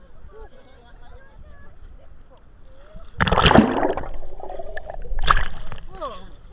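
Sea water splashing as a swimmer ducks his head under and comes back up: two loud splashes, the first about three seconds in and a shorter one about two seconds later.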